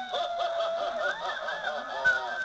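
Spooky moaning voice of a Halloween animated prop, heard through a small playback speaker. A long held moaning note for about the first second gives way to wavering, warbling notes that bend up and down.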